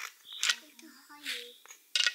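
Small garden pebbles clicking against each other as a toddler picks through a bed of stones, with the child's soft voice.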